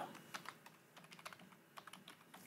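Faint typing on a computer keyboard: a quick, uneven run of key clicks as a name is entered.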